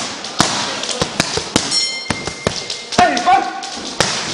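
Boxing gloves smacking focus mitts in an irregular series of sharp punches. A short vocal cry comes about three seconds in.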